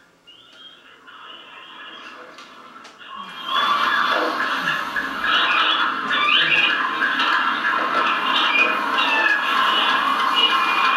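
The soundtrack of a crowd video playing through the room's speakers: a dense mix of noise with many short, high sliding sounds. It fades in and becomes loud about three seconds in.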